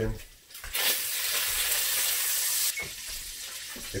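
Bacon frying in a Dutch oven, stirred: a loud sizzle for about two seconds, then a quieter sizzle.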